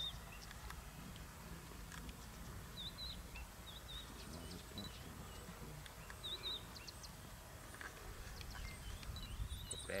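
Faint outdoor ambience: short, high double chirps recur every second or two over a low, steady rumble.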